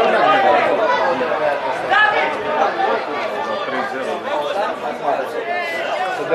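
Several men's voices talking and calling out over one another on a football pitch, with no single voice standing clear.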